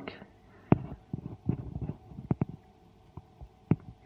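Handling noise from a small bare circuit board being turned over by hand: light rustle with a few sharp clicks and taps. One tap comes under a second in, two come in quick succession mid-way, and one comes near the end.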